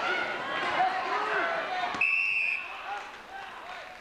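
Gym crowd shouting and yelling during a wrestling bout. About halfway through, a scoreboard timer buzzer sounds: one steady electronic tone lasting about half a second, which cuts through the crowd. The crowd noise is quieter after it.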